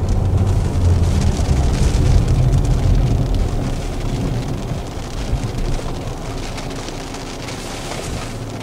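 Road and tyre noise inside a Nissan Qashqai's cabin: a low rumble that fades away as the car brakes gently to a stop.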